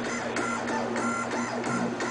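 REXA electraulic actuator's servo motor and pump whirring in short pulses, about four a second, over a steady hum, as the actuator follows small rapid set-point changes from its 4–20 mA control signal.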